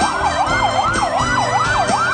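Emergency vehicle siren on a fast yelp, its pitch sweeping rapidly up and down about three times a second, over backing music.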